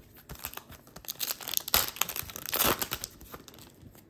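A 2020-21 Upper Deck Overtime hockey card pack torn open by hand, its wrapper crinkling and ripping, with the loudest rips about two seconds in and again a second later.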